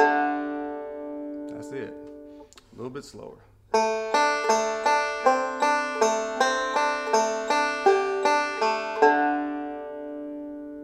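Five-string banjo playing a D7 bluegrass lick slowly in rolling eighth notes. A note rings and dies away, there is a short pause, and then the lick resumes at about two and a half notes a second. Near the end it finishes on a ringing note.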